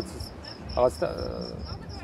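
Crickets chirping in a steady, rapid, high-pitched rhythm. A short vocal sound from the man cuts in about midway.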